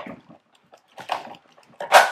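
Scissors snipping the wire ties on a plastic-wrapped toy slide, with the plastic wrap crinkling: three short bursts, the loudest near the end.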